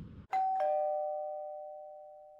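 Two-note doorbell-style 'ding-dong' chime, a higher note then a lower one about a third of a second later, both ringing on and fading slowly.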